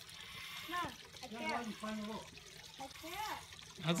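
Soft fizzing of breath blown through a soapy hand towel on a plastic bottle, pushing out a foam bubble snake. Faint voices talk quietly through the middle of it.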